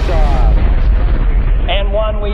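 Loud, deep rumble of a rocket launch at liftoff, heavy in the bass, its top end muffled from about half a second in.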